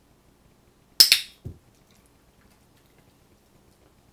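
A training clicker clicked once, a sharp double click of press and release, marking the dog's hold of the dumbbell; about half a second later a dull thump as the dumbbell drops onto the carpet.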